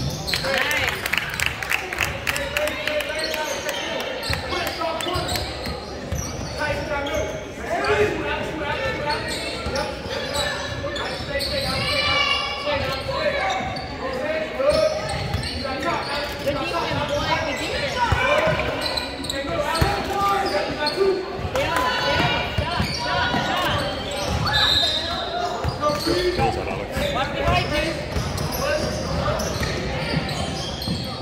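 A basketball being dribbled and bounced on a hardwood gym floor during a game, mixed with the voices of players and spectators calling out, with the echo of a large gym.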